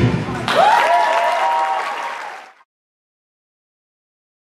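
Rock dance track ending sharply, followed by an audience applauding with a few rising whoops and shouts, which fade and cut off after about two seconds.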